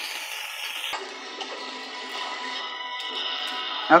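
Cabbage sizzling as it fries in a pan, cut off suddenly about a second in; after that, music from a television plays in the background, with held steady tones.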